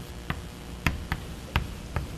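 Chalk writing on a blackboard: about five sharp taps and clicks of the chalk striking the board at uneven intervals.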